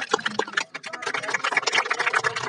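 A small crowd clapping, many quick irregular claps overlapping.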